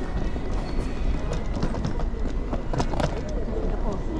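Busy airport terminal ambience heard while walking: a steady low rumble with indistinct voices and footsteps.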